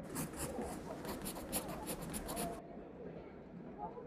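Pencil writing on paper in a quick run of scratchy strokes, stopping abruptly about two and a half seconds in.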